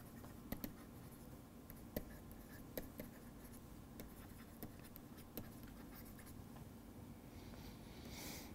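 Faint tapping and scratching of a stylus writing on a tablet screen: light, irregular clicks as the pen strokes out words, over a low room hiss.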